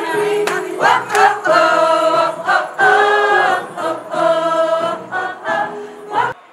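A group of mostly women's voices singing together in a choir, in phrases with long held notes.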